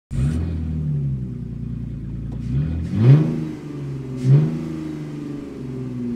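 A car engine idling, revved in two quick blips, the first about three seconds in and the second a little after four seconds.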